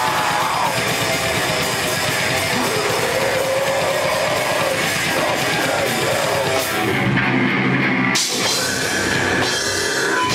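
Rock band playing live and loud, with guitars and a drum kit. About seven seconds in the cymbals drop out for about a second, then the full band comes back in with a hit.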